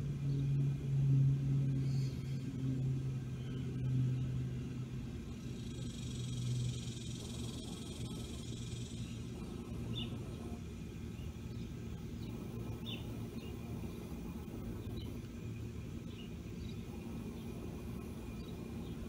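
Outdoor background rumble. A low, steady hum fades out over the first several seconds, a brief hiss comes up about six seconds in, and a few faint ticks follow later.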